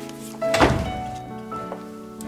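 Drama background music with steady held notes, broken about half a second in by a single dull thunk.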